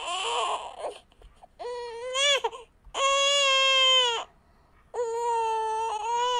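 An infant crying: four drawn-out wails of about a second each, with short breaths between them.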